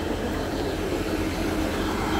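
Northern class 158 diesel multiple unit's underfloor diesel engines running beside the platform: a steady low rumble with a faint hum above it.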